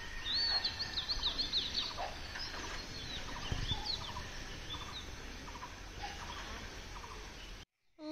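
Birds chirping outdoors: a quick run of short, high chirps in the first couple of seconds, then scattered calls over a steady background hiss. The sound drops out briefly just before the end.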